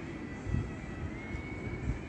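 Steady low rumble of city background noise, with a faint high whine held throughout and two brief low bumps, about half a second in and near the end.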